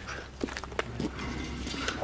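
A few light footsteps and scuffs on a gritty concrete floor, short ticks about every half second, over a steady low rumble.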